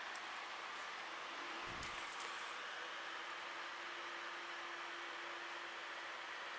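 Quiet, steady background hum and hiss with a faint low thump about two seconds in.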